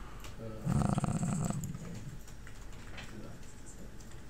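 A brief low, rough vocal noise from a person, under a second long, about a second in, with a few faint clicks around it.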